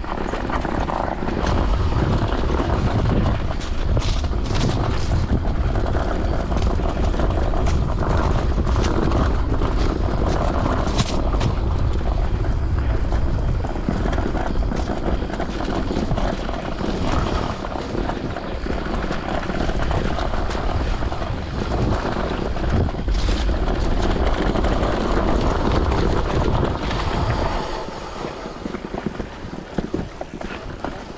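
Electric mountain bike descending a dirt forest trail at speed: a heavy wind rumble on the handlebar camera's microphone, with tyre noise and frequent sharp rattles and clicks from the bike over the rough ground. The noise drops near the end.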